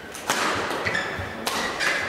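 Badminton rackets striking a shuttlecock during a rally: two sharp hits about a second apart.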